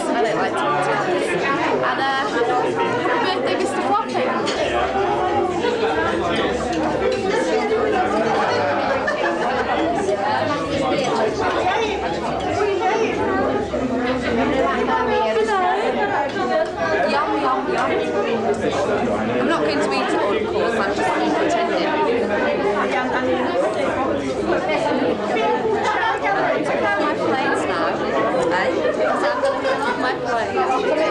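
Crowd chatter in a large hall: many people talking at once in a steady, unbroken murmur of overlapping voices.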